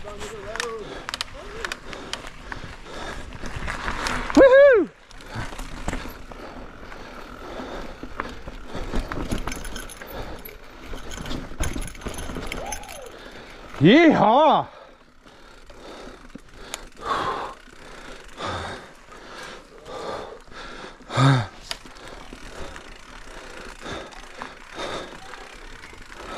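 Mountain bike rolling along a dirt singletrack: tyres on the dirt and a steady rattle of the bike's chain and frame, with many small clicks and knocks over roots and stones. About halfway through the rider gives a short whoop.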